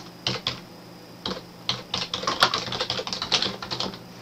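Typing on a computer keyboard: a run of quick, irregular key clicks, a few at first, then a short pause and a denser burst of keystrokes through the rest.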